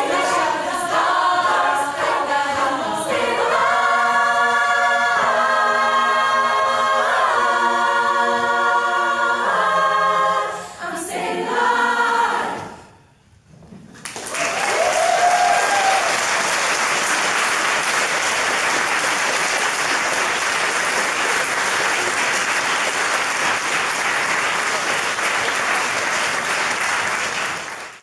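A cappella women's choir singing the closing bars, with long chords held in several parts, ending about twelve seconds in. After a brief hush, the audience applauds steadily.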